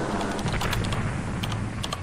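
Intro-card sound effects: a steady crackling hiss, with a few sharp clicks, more of them near the end, in time with a cursor clicking a subscribe button.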